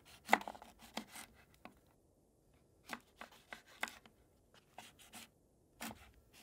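Knife chopping vegetables on a cutting board: irregular sharp strokes in small clusters, a few in the first second and a half, more around the middle and again near the end, with short pauses between.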